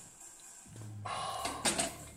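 A weightlifter's low grunt and forced breath, then a short double clank about three-quarters of the way through as the plate-loaded barbell is set down on the wooden blocks.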